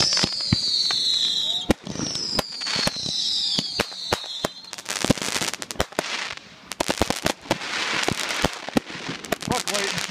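Fireworks display: aerial shells bursting with many sharp bangs and crackling, and two long whistles falling in pitch in the first half.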